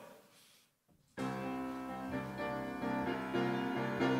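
Piano playing the soft opening bars of a choral anthem's accompaniment: sustained repeated chords that begin about a second in and grow slightly louder. The intro is meant to sound like the Holy Spirit coming from afar.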